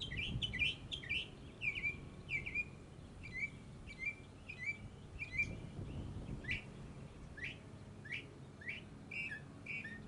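Songbirds chirping: a quick run of short falling chirps, then slower, longer falling notes in the second half, over a faint low background rumble.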